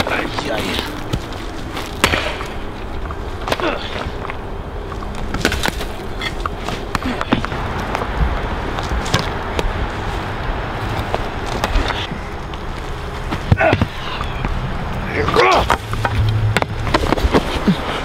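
Axe chopping and splitting wooden logs: sharp single strikes about every couple of seconds over a steady hiss.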